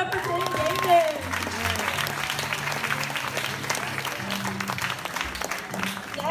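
Audience applauding and cheering over background music with a stepping bass line, with a long held cheer from a voice near the start.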